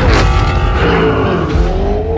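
A car engine sounding over a music bed with heavy bass. Its pitch dips and then climbs again in the second half.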